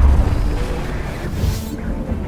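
Dramatic intro music with a deep cinematic boom dying away, and a brief whoosh about a second and a half in.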